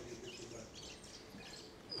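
Faint background noise with a few faint bird chirps.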